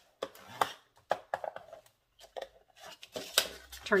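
A plastic bone folder rubbed along fresh creases in thick cardstock to burnish them, with short scrapes, paper rustles and light taps on a plastic scoring board, in scattered bursts.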